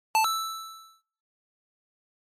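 A single bright bell-like chime struck once, ringing out and fading away within about a second: a transition ding marking the start of a new topic section.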